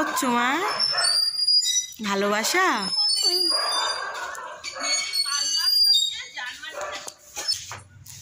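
Playful, sing-song vocalizing by an adult and a toddler, in several bursts with few clear words, with short high-pitched squeaks scattered throughout.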